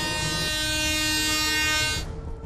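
A train horn sounding one long, steady blast of several notes together, cut off suddenly at the end.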